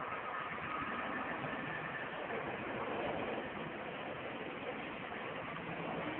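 Steady drone of a distant firefighting aircraft's engines with a faint whine, growing a little louder about a second in.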